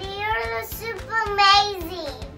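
A young girl singing two drawn-out phrases, the second falling in pitch at its end.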